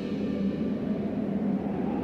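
Low, steady drone from a dramatic background score, held low notes with little high sound.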